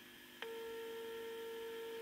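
Vegaty S.T.4 signal tracer's loudspeaker sounding a steady tone with a few overtones. It starts suddenly about half a second in, as the probe picks up the signal on pin 2, the grid of a tube in the radio under test.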